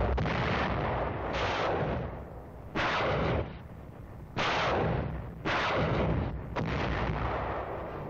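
Warship guns firing a shore bombardment: a run of heavy blasts, about five sudden shots a second or so apart, each trailing off into a rumble, heard on an old film soundtrack with the top end cut off.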